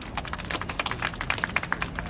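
A small group applauding: many scattered, uneven hand claps.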